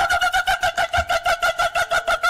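A man's voice held on one steady high note and broken into rapid, even stutters, about eight a second, like a glitching machine.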